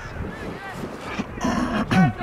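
Short, faint calls from voices out on a football pitch. Near the end comes a louder rush of noise and a single sharp knock.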